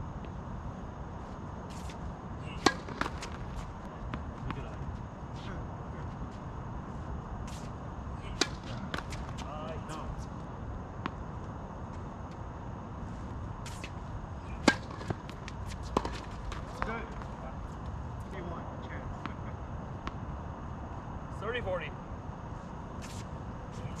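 Tennis racquets striking the ball during doubles rallies on an outdoor hard court: sharp single pops several seconds apart, the loudest near the start and about two-thirds of the way through. A steady low rumble runs underneath, with a few brief distant voices.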